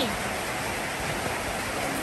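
Steady hiss of falling rain, even and unbroken.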